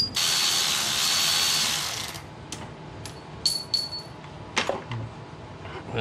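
Cordless electric ratchet running for about two seconds, spinning a compressor mounting bolt loose, then two short bursts. A few metal clicks follow.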